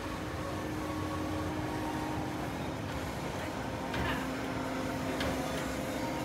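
Steady mechanical hum with a constant low drone from the Slingshot ride's machinery as the capsule is lowered back to the ground.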